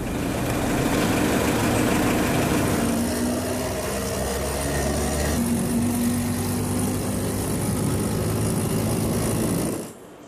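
Steady vehicle engine rumble mixed with a loud wash of road or wind noise, as heard from inside a moving vehicle. The low hum changes about five and a half seconds in.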